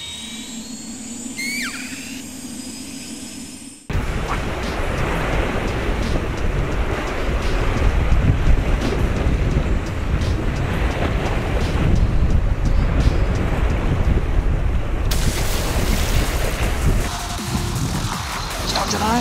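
A synthetic transition sound effect, a steady low hum with a few sliding whistle-like tones, for about four seconds. Then it cuts abruptly to loud, steady wind rumbling on the microphone.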